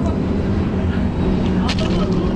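Steady low hum of an idling vehicle engine, with a couple of short knocks near the end.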